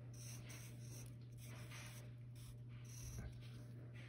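Pencil writing on paper: a run of short, faint scratching strokes, over a steady low hum.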